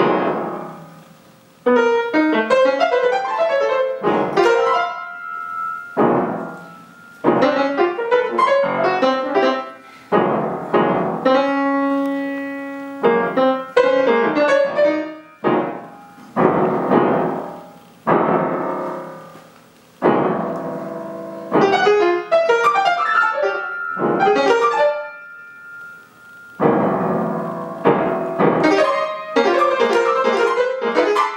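Solo acoustic grand piano played in free-jazz phrases. Each phrase opens with a loud struck chord or cluster, often with a quick flurry of notes, and is left to ring and fade before the next one begins a couple of seconds later.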